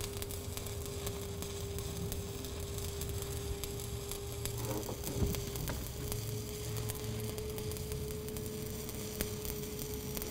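Stick-welding (SMAW) arc crackling steadily as the electrode burns off, running a bead on steel pipe, with a steady hum underneath and one louder crack about halfway through.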